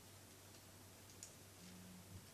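Near silence: room tone with a low steady hum and one faint click about a second in.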